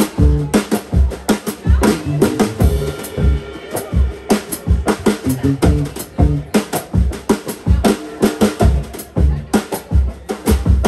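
Live band playing an up-tempo song: drum kit with a steady kick and snare beat under bass and an amplified cigar box guitar.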